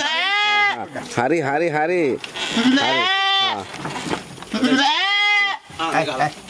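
Goats bleating over and over, with three long, loud calls: one at the start, one in the middle and one near the end.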